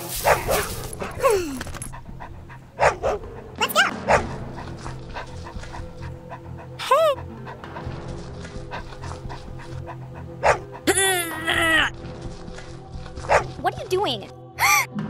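A string of short, dog-like yelping calls, a few seconds apart with a quick cluster about eleven seconds in, over steady background music.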